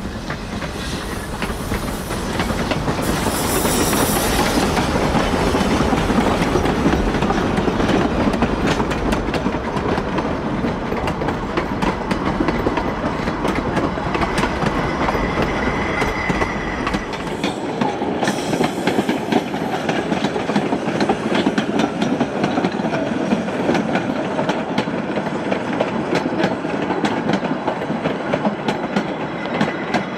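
A narrow-gauge train hauled by 1875 wood-burning steam locomotives passes close by, its passenger cars rolling past with a steady clickety-clack of wheels over rail joints. A brief high squeal comes about halfway, and the deep rumble falls away soon after.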